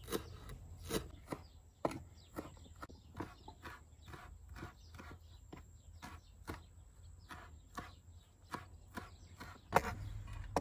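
Kitchen knife chopping fresh greens on a wooden cutting board: faint, irregular taps of the blade striking the board, about two a second.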